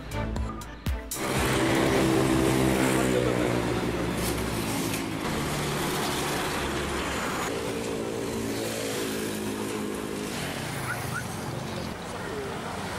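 A heavy truck's engine running loud and close as it drives past, its pitch holding steady and then stepping to a new level a few times. The first second holds a brief run of sharp clicks from a news transition effect.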